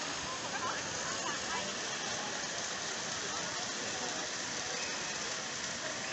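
Steady splashing of running fountain water, with people's voices faint in the background.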